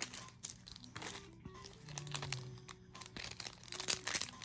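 Soft crinkling and rustling of a foil MetaZoo booster pack being picked up and handled, with light clicks and a louder crinkle near the end.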